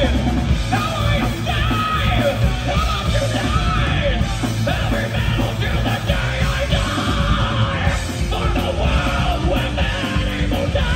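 Metal band playing live through a club PA: loud distorted electric guitars, bass and drums, with the singer's vocals over them.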